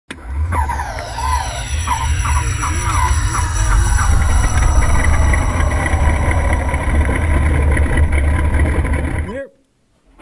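Intro sound effect with a loud, steady low rumble like an engine and a whine that falls in pitch over the first few seconds, with wavering tones above it. It cuts off suddenly just before the end.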